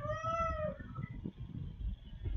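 A single short pitched call that rises and then falls in pitch over about the first second, meow-like in shape, over a low background rumble.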